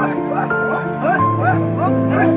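A group of men chanting a dance song: rhythmic, repeated "oh" calls about four a second over several held notes.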